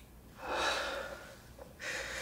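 A man's deep, audible breath, about a second long, taken in a pause in his speech. A second breath begins right at the end.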